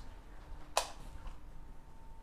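A single sharp click of a wall light switch being flipped, about a second in, over faint steady room hum.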